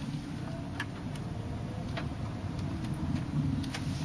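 A car driving slowly on a gravel road, heard from inside the cabin: a steady low engine and tyre rumble with scattered light clicks of gravel under the tyres.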